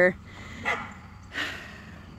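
A dog barking: two short barks under a second apart.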